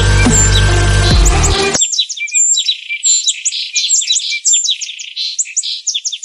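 A deep booming music swell with low rumble cuts off sharply about two seconds in, giving way to a dense chorus of small birds chirping and tweeting rapidly, thin and high-pitched with no low end.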